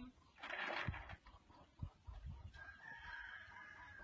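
A rooster crowing faintly, its long held call filling the second half, with a harsher burst about half a second in and a couple of dull low thuds.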